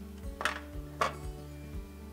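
A metal spoon clinks twice against a Dutch oven, about half a second in and again about a second in, over quiet background music.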